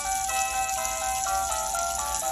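Built-in music of an Avon fiber-optic musical fountain scene: a tinny electronic melody of short, steady notes stepping from pitch to pitch, over a faint hiss.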